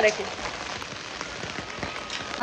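Heavy rain falling steadily as an even hiss, with drops pattering and ticking now and then on a cloth umbrella held overhead.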